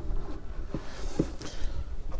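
Soft footsteps of a man in leather boat shoes crossing a doormat onto the motorhome's metal entry steps, with a couple of quiet knocks about a second in, over a low steady rumble.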